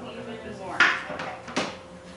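A kitchen knife striking a cutting board as food is cut, two sharp knocks about a second in and again near the end, each with a short ringing tail, and lighter taps between.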